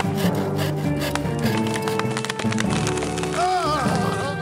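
Sawing sound effect: a two-man crosscut saw rasping back and forth in repeated strokes, over background music.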